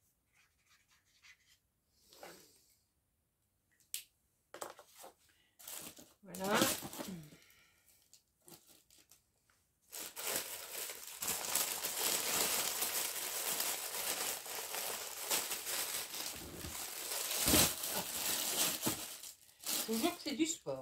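Plastic-sleeved cross-stitch kits rustling and crinkling as they are handled and filed into a plastic storage box: a few light taps and rustles at first, then loud, continuous crinkling of plastic packaging through the second half.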